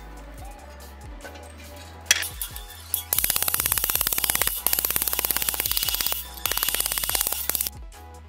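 Ball-peen hammer striking a sheet-steel patch panel on the anvil face of a bench vise to shape it: one sharp blow about two seconds in, then rapid, steady hammering in three runs broken by brief pauses.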